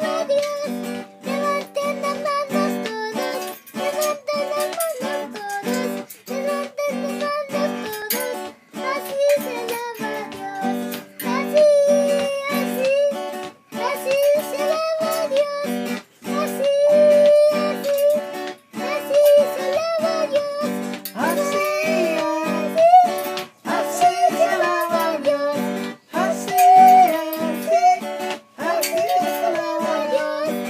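A young boy singing a praise song in a high voice, in short phrases with brief breaks between them.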